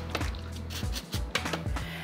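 Lemon rind being grated over the pizza: a run of short scraping strokes, over soft background music.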